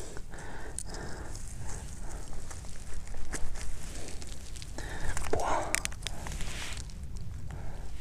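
Dry pine needles and twigs crackling and rustling close by as a hand brushes them aside from a mushroom on the forest floor, with irregular small clicks throughout.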